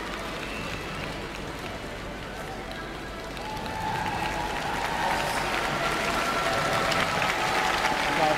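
Arena crowd noise of a large audience, applause and cheering that swell from about halfway through.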